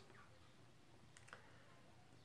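Near silence: room tone, with two faint clicks in quick succession a little over a second in.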